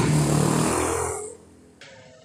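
A passing vehicle's noise with a low steady hum, fading away over about a second, then a faint click near the end.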